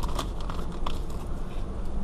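Faint crinkling and clicking of a torn foil trading-card pack wrapper and cards being handled, over a steady low hum.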